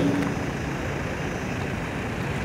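Steady low rumble and hiss of background noise in a pause between spoken phrases, with the last word's echo dying away just at the start.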